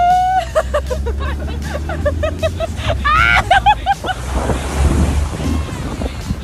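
Pickup truck engine running with a low rumble while it drives through floodwater. About four seconds in a rush of splashing water takes over. Before that, shrieks and laughter from the riders in the open truck bed.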